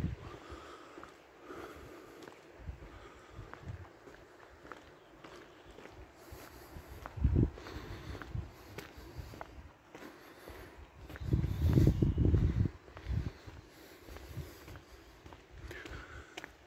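Footsteps of a person walking on an asphalt road, faint ticks throughout. A low rumble on the microphone breaks in briefly about seven seconds in and again for about a second and a half around twelve seconds.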